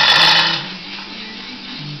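A hand chain hoist rattling briefly as it is worked, stopping about half a second in. Background music with steady low notes follows.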